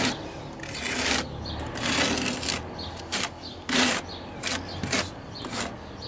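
Notched trowel scraping thinset mortar onto an OSB board in a run of short, uneven strokes, roughly two a second.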